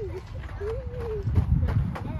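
A person's voice humming a wavering tone, twice, over footsteps and low rumbling on the microphone that is loudest about one and a half seconds in.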